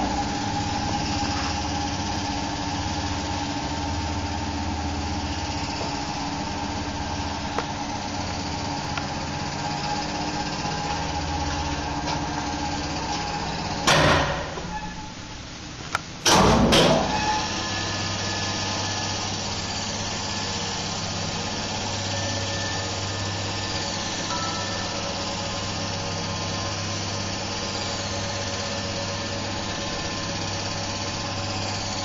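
Original 1962 ASEA elevator traction machine running: the electric motor and gear drive turning the rope sheave with a steady hum. About 14 s in it stops with a loud knock and goes quieter. About two seconds later it starts again with another loud knock and runs on with a deeper hum.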